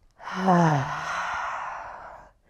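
A woman's deliberate sighing exhale through the mouth: a short voiced 'ahh' that falls in pitch, trailing off into a long breathy out-breath.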